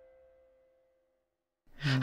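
The last held note of the intro music fades out into about a second of near silence. Near the end a man takes an audible breath and starts to speak.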